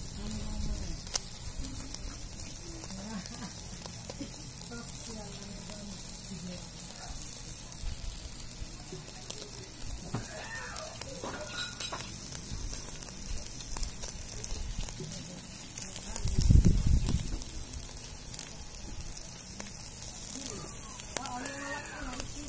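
Chicken pieces sizzling on a wire grill over hot coals: a steady crackling hiss with scattered small pops. There is a brief low rumble about three-quarters of the way through.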